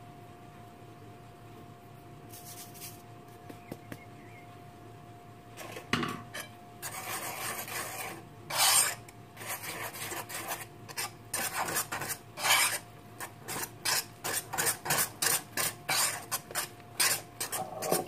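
Wire balloon whisk stirring flour into thick banana batter in a glazed ceramic bowl, its wires scraping round the bowl in repeated strokes that start about six seconds in and come quicker toward the end. Before that, only a faint hiss of flour being sifted through a mesh sieve.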